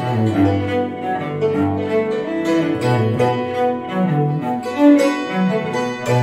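Acoustic instrumental music: a hammered dulcimer with a bowed string instrument holding long low notes and a slow melody.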